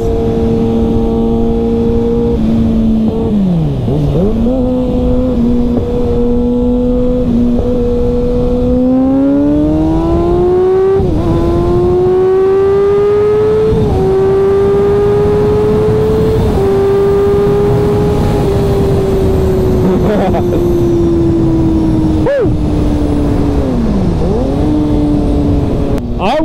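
Kawasaki ZX-6R inline-four sport bike engine at highway cruising revs under a steady rush of wind. The revs dip briefly about four seconds in, then climb as the bike accelerates from about nine seconds, with gear changes near eleven and fourteen seconds. The revs then ease off slowly over the last several seconds, with another short dip near the end.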